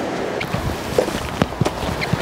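Footsteps crunching on a gravel walking track, a few irregular steps, over steady outdoor background noise.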